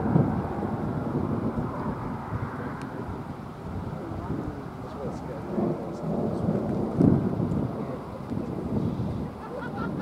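Thunder rumbling, with the loudest rolls right at the start and about seven seconds in.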